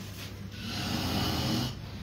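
A sleeping person snoring, one long snore about a second long.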